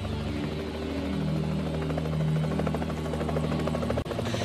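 Search helicopter's rotor chop, steady and continuous, with low sustained tones underneath that shift pitch about a second in.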